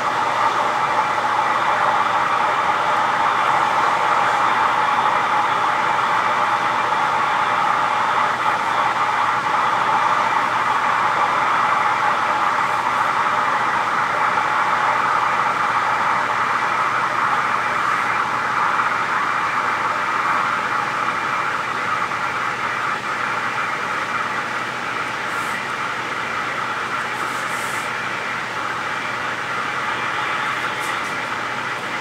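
A loud, steady rushing noise with no rhythm, easing slightly in the second half.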